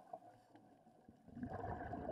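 Scuba regulator exhaust underwater: exhaled breath bubbling out in a low rush that starts about one and a half seconds in, after a quiet stretch with one faint tick.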